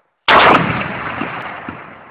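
An artillery shell blast: a sudden loud boom about a quarter second in, its rumble and echo dying away slowly over the next two seconds.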